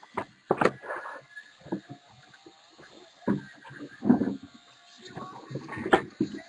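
Sealed, wrapped cardboard trading-card boxes handled on a table: scattered short crinkles, taps and scrapes, with a few sharp clicks near the start.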